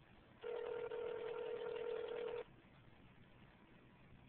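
Telephone ringback tone heard over the phone's speaker: one steady ring about two seconds long, the signal that the called line is ringing and has not yet been answered.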